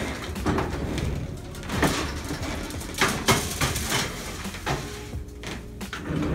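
Knocks and clatter of a metal baking sheet being handled and an electric oven's door being opened to put it in: several sharp knocks, over quiet background music.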